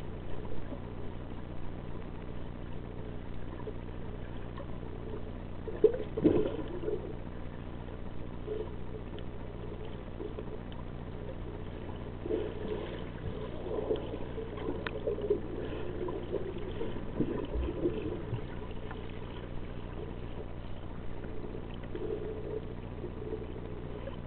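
Muffled underwater sound picked up by a submerged camera: water sloshing and gurgling against it over a steady low hum, with irregular knocks and bursts, the loudest about six seconds in.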